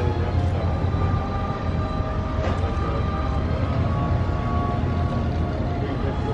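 Steady low rumble of background noise, with faint held tones above it.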